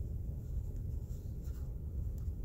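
Steady low rumble of a car being driven, heard inside the cabin.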